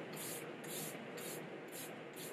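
Fine-mist pump spray bottle of face mist being sprayed repeatedly: about four short hisses, roughly half a second apart.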